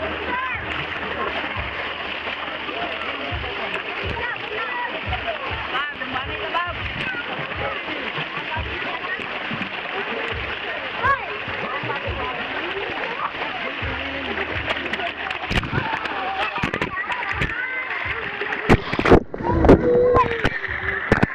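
Many children shouting and calling over one another in a busy swimming pool, over a steady wash of splashing water. Near the end come several loud splashes close to the microphone.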